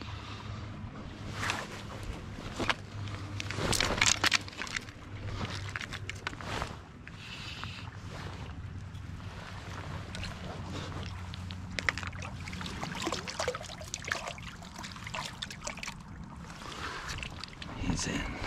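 Light splashing and sloshing of water as a hooked brown trout is played in on a fly rod, with scattered knocks and rustles of gear handling, the loudest a few seconds in.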